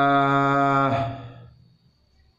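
A man's voice holding a single drawn-out "wa" at one steady pitch, the opening word of an Arabic line read aloud from a classical text, fading out about a second in.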